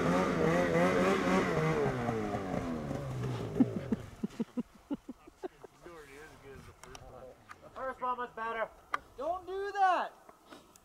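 Snowmobile engine running with a wavering pitch, then dying away over the first four seconds as the sled tips over in the snow. A few light clicks follow, and short distant shouts come near the end.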